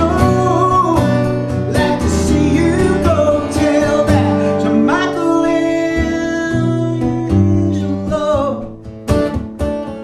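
A man singing a folk song over a strummed acoustic guitar. The voice drops out near the end, leaving the guitar strumming more quietly.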